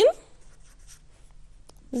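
Marker pen drawing a line and writing, a few faint scratchy strokes between spoken words.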